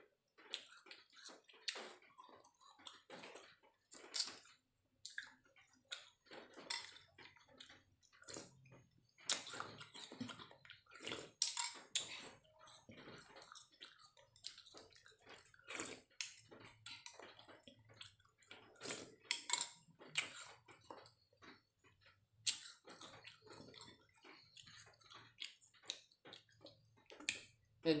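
Eating a bowl of iced fruit dessert with a metal spoon: irregular clinks and scrapes of the spoon against the bowl, with slurping of the liquid and chewing.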